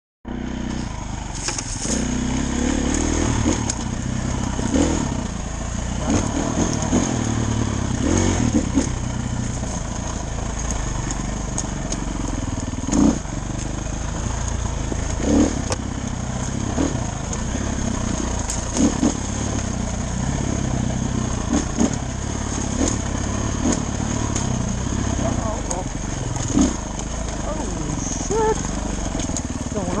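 Dirt bike engine running hard along a rough trail, its pitch rising and falling as the throttle changes, with scattered sharp knocks as the bike hits the ground.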